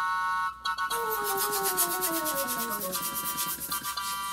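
Hand balloon pump inflating a balloon: rapid rasping air strokes starting about a second in and stopping just before the end, over background music with a slowly descending melody.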